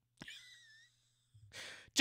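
A man's breathing in a pause between sentences: a small mouth click and a soft exhale, then a short breath in near the end, just before he speaks again.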